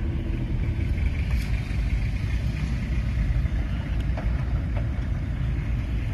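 Steady low rumble of a car's engine and tyres on the road, heard from inside the moving car.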